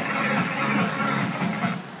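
A group of workers shouting a chant in unison, many voices together. It starts suddenly and loudly and breaks off just before the end.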